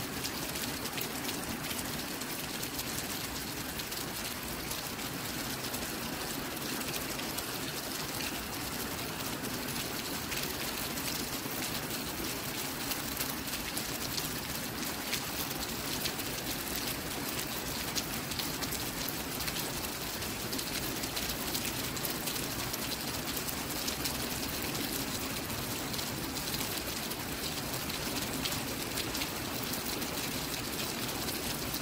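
Steady rain falling, an even hiss with a dense patter of drops that holds at the same level throughout.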